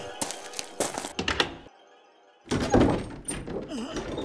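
Several sharp knocks on a wooden door, then a brief hush followed by a louder burst of sound with a voice in it.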